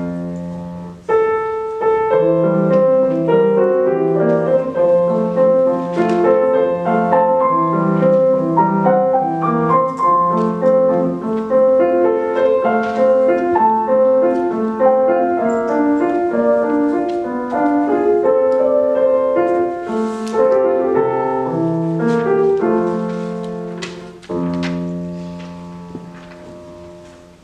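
Solo grand piano played live: a continuous run of notes over a lower accompaniment, ending with a final chord struck about two seconds before the end that is left to ring and fade away.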